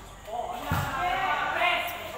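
Volleyball players calling out during a rally, with a dull thud of the ball being played about a second in and a sharp slap of hands on the ball near the end.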